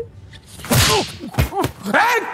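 A trailer whoosh sound effect, a sudden swish about two-thirds of a second in after a brief hush, followed by short tones that rise and fall.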